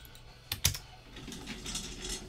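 Two sharp clicks in quick succession about half a second in, then faint light tapping and handling noise, like keys on a computer keyboard.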